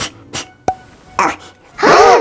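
A person's voice: short breathy bursts, then a loud wailing cry near the end.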